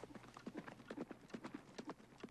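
Faint clip-clop of horse hooves, a quick, irregular run of knocks.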